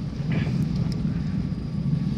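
Steady low rumble of a car's engine and tyres on a wet road, heard from inside the cabin while driving.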